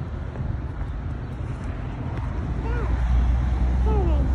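Road traffic going past, with a vehicle's low engine and tyre rumble building up in the second half.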